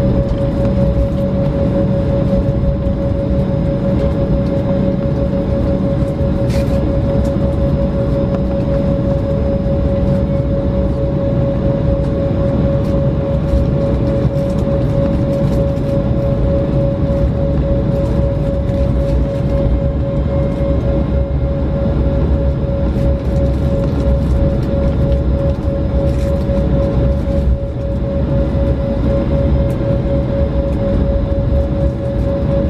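Airliner's jet engines at taxi power heard inside the cabin: a steady low rumble with a constant whine held on one pitch throughout.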